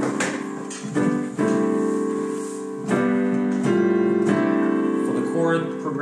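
Grand piano sound from a software instrument, triggered from a MIDI keyboard, playing a slow chord progression with a new chord struck every second or so and held between changes.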